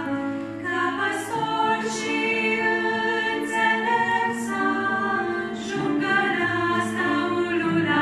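A women's vocal quartet singing a Romanian Christian song in close harmony, on long sustained notes. A low held note sounds beneath the voices near the start and again near the end.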